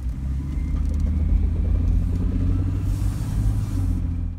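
Toyota 80 Series Land Cruiser's inline-six engine and drivetrain rumbling steadily, heard from inside the cab while driving slowly.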